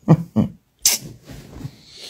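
A person laughing in short, evenly spaced bursts, ending in a sharp breathy burst about a second in.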